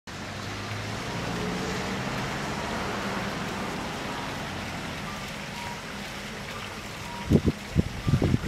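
Street ambience with a motor vehicle's engine humming nearby, the hum fading after about four seconds under a steady outdoor hiss.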